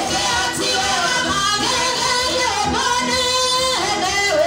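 Women singing a worship song through handheld microphones, with one long held note near the end.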